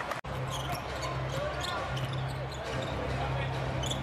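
Basketball game sound on a hardwood court: a ball being bounced and short clicks and squeaks of play over a steady low hum. A brief dropout comes just after the start, where the picture cuts.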